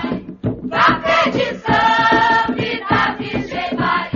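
A choir singing an Umbanda ponto (devotional chant), voices together in sung phrases with short breaks between them.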